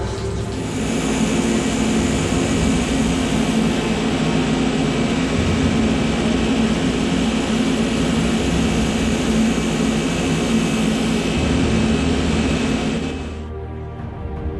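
Belt grinder running with a steel axe head held against its abrasive belt, a steady whirring hiss of grinding that stops suddenly near the end.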